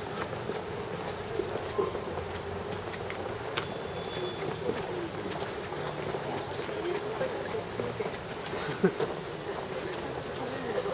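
Street ambience heard while walking: indistinct voices over a steady background hum, with scattered small clicks and taps.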